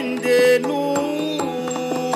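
Yakshagana bhagavata singing a long held, gliding melodic line over a steady drone, with a few sharp maddale drum strokes near the end.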